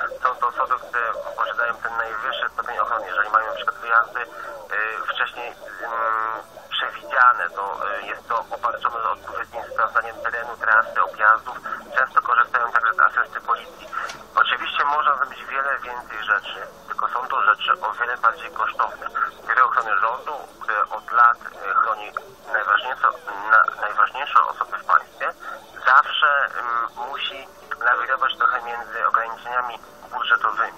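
Continuous speech with a thin, narrow sound, as if heard over a radio or phone line.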